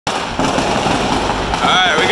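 A string of firecrackers going off down the street, a dense, continuous crackle, with a man starting to speak near the end.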